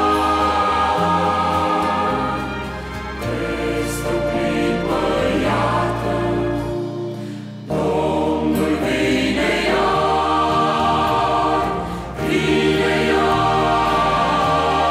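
Mixed choir singing a Christian song in long held phrases, the voices breaking off briefly about seven and a half seconds in before coming back in together.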